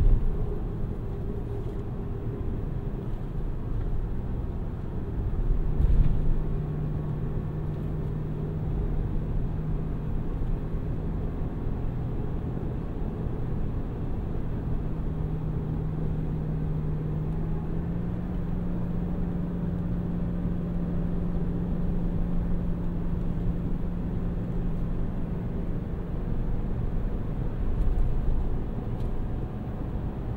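Inside the cab of a 2023 Chevrolet Silverado 1500 ZR2 Bison cruising at about 45 mph: steady road rumble from its 33-inch tyres under the 6.2L V8. A low drone comes in about six seconds in and rises slightly in pitch midway. A few thumps come from bumps in the road, near the start, at six seconds and near the end.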